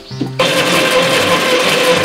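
Stationary exercise bike whirring steadily under hard pedalling. The sound starts suddenly a little way in, over background music.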